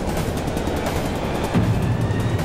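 Dramatic background score layered with a dense, noisy sound effect, swelling louder in the low end about one and a half seconds in.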